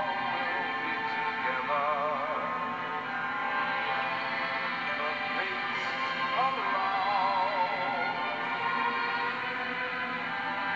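A Christmas song played on the 106.7 Lite FM radio station: a singer with a wavering vibrato over a full musical backing.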